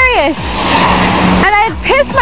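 A steady hiss of car tyres on a rain-wet street, swelling in the second between bits of a woman's speech.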